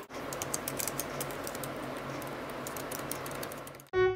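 Typing on a laptop keyboard: rapid, irregular key clicks over a steady background hiss, stopping abruptly near the end.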